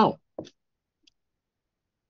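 A man's voice saying a short "No" at the very start, followed by a couple of faint short clicks, then silence.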